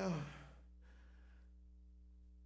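A man's drawn-out spoken "Well," falling in pitch and trailing off, then a faint breath, then a hush with a steady low electrical hum.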